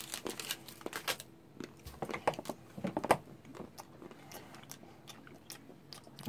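A person biting and chewing pieces of dark chocolate: faint, irregular small crunches and clicks.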